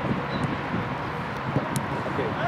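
Wind noise on the camera microphone, a steady low rush, with one short sharp click near the end.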